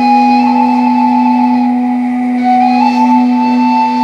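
Caval, a long wooden end-blown shepherd's flute, playing a slow melody of long held notes that step up slightly, over a steady low drone.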